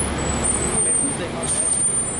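Steady downtown traffic noise: a low rumble from road vehicles, with a city bus running at the curb, and people talking faintly.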